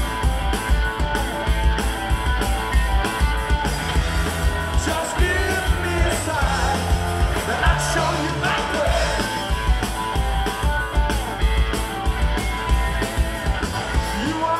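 A live rock trio playing a driving blues-rock number, with distorted electric guitar, electric bass and a drum kit keeping a steady beat.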